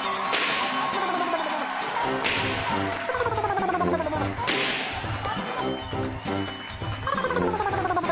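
Background music of repeated falling runs of notes over a steady beat, cut through by three short whoosh sound effects about two seconds apart.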